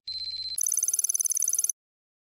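Electronic ringing sound effect: a steady high tone for about half a second, then a rapid trilling ring like a telephone bell for about a second, cutting off suddenly.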